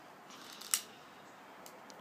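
Click of a long-nosed butane utility lighter being sparked to relight birthday candles: one sharp click about three-quarters of a second in, then a couple of fainter clicks near the end.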